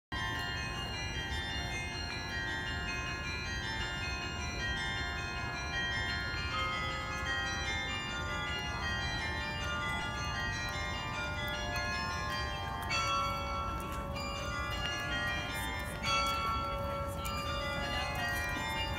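Sather Tower's carillon bells playing a tune at noon: a run of struck notes, each ringing on and overlapping the next, with a louder stroke near the end, over a steady low rumble of outdoor background noise.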